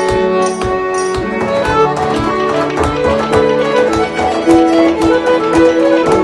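A folk ensemble plays a brisk traditional-style tune, with fiddle, accordion, harp and cello carrying the melody and harmony over a steady frame-drum beat.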